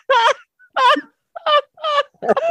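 A person laughing hard in about four high-pitched, wavering bursts with short gaps between them.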